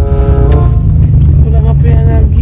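Steady low rumble of a car's cabin, with voices over it.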